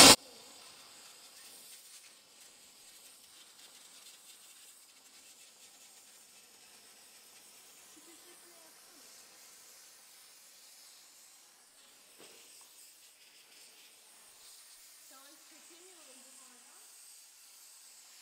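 Faint, steady hiss of an Arçelik steam cleaner's nozzle blowing steam into the fins of a panel radiator to loosen dust, with faint voices in the background.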